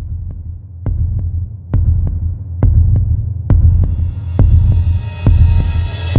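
Cinematic sound design under a production logo: a deep bass hum with a heavy pulse like a heartbeat a little under once a second. A thin high shimmer builds in from about halfway through.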